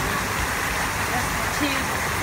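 Steady rush of falling water from a man-made waterfall into a garden pond, even and unbroken, with faint voices over it.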